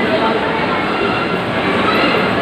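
Loud, steady background din of a busy shop, with indistinct voices in it.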